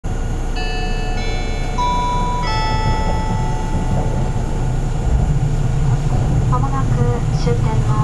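Four-note electronic announcement chime over the public-address system of a JR 651-series limited express train. The four notes sound about two-thirds of a second apart, and the last one rings out. It signals the start of the on-board announcement, which a voice begins near the end, with the train's low running rumble underneath.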